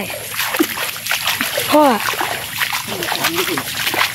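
Irregular splashing and sloshing of feet wading through shallow water and mud, step after step, with a short call from a voice in between.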